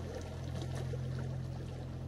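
Steady rushing water noise, even and unbroken, over a low steady hum.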